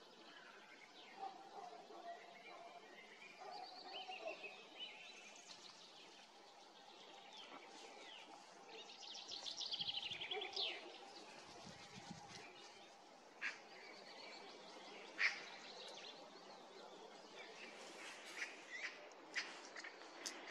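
Faint songbird song and calls in a conifer forest. A descending trilled phrase comes about halfway through, with scattered short chirps, and a few sharp short notes near the end, the loudest about three-quarters of the way in.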